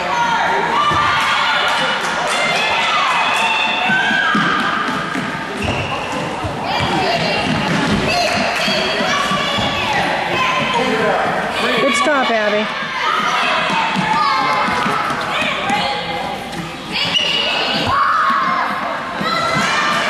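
A soccer ball being kicked and bouncing on a gym's hardwood floor, with thuds throughout, under children and spectators calling out in a large gym hall.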